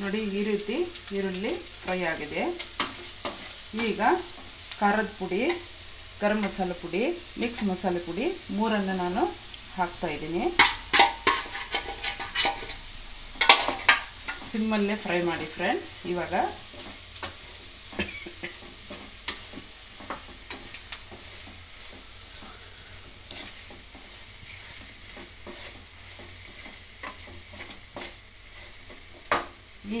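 Onions and spice powders sizzling as they fry in a nonstick pan, stirred with a steel slotted spoon that scrapes the pan in repeated strokes for about the first half, with a few sharp clacks of spoon on pan. The second half is mostly an even sizzle with occasional light taps.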